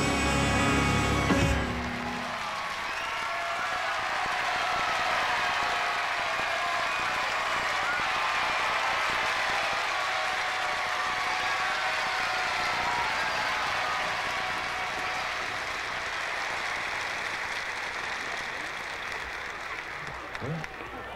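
The last sung note of an opera aria with its accompaniment ends about a second and a half in, followed by long, steady audience applause that eases off slightly near the end.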